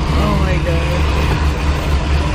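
Car interior noise while driving through heavy rain on a flooded street: a steady low rumble of engine and tyres under a constant hiss of water and rain, with faint voices over it.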